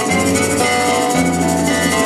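A live Puerto Rican folk band playing: acoustic guitars over a moving bass line, with hand drums (bongos and conga) and a steady high rhythm on top.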